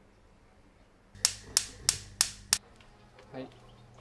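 Five sharp clicks in quick, even succession, about three a second, over a faint low hum.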